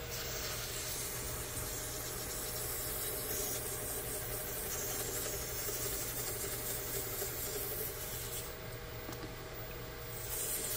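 Variable-speed mini lathe running steadily with a motor hum while sandpaper is held against a spinning cherry-pit and resin pen blank, giving an even rubbing hiss. The hiss thins out for the last second or so.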